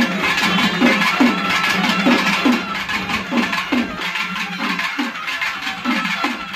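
Live temple-festival folk band: long reed pipes with brass bells playing sustained melody over drumming. The drum strokes keep a steady beat a little over two a second, each one dipping in pitch.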